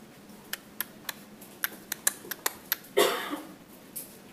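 About nine light, irregular clicks in under three seconds, then a short breathy sound about three seconds in.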